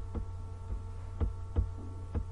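Steady electrical hum with a few short knocks, three in all; the loudest comes about a second and a half in.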